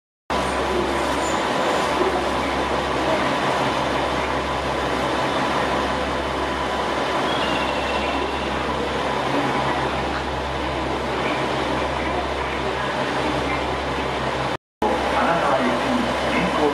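JR KiHa 40-series diesel railcar idling at a station platform: a steady low engine rumble with a faint steady whine above it. The sound breaks off briefly near the end and resumes.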